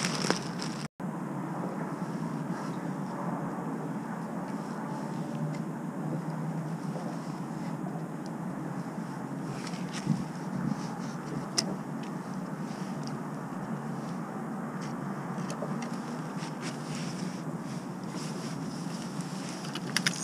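Steady outdoor background hush with no clear single source, and a few faint handling clicks and taps about ten and twelve seconds in.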